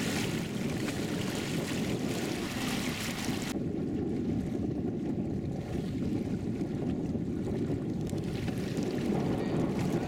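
Water rushing and splashing against the side of a panga as a snorkeler holds on alongside, over a steady low rumble of wind on the microphone. About three and a half seconds in the splashing hiss cuts off suddenly, leaving only the low rumble.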